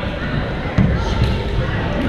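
Badminton play in a large gym hall: a single sharp, low thud about three quarters of a second in, with a few lighter clicks after it, over players' voices.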